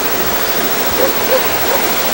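Steady rushing of creek water flowing over stones.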